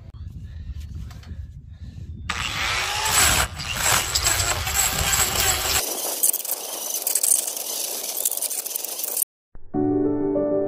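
Angle grinder fitted with a hole-cutter attachment boring into a wooden stump, a loud, harsh grinding that starts about two seconds in and cuts off shortly before the end. Music begins right at the end.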